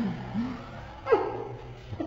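A few short voice sounds, low in pitch, near the start, and one falling sound about a second in.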